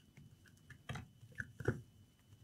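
A few faint clicks and light knocks as a laptop battery pack is handled and pressed down into the laptop's chassis, in the second half.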